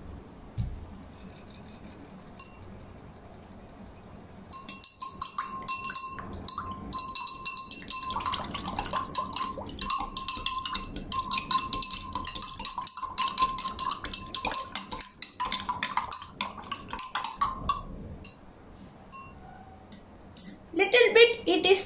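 A spoon stirring powder into a glass of water, clinking rapidly against the inside of the glass, which rings with a steady tone. The clinking starts about five seconds in and stops shortly before the end.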